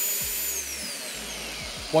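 FEIN KBC 36 compact mag drill's brushless motor running unloaded, its high whine holding at top speed for about half a second and then falling steadily as the speed is turned down.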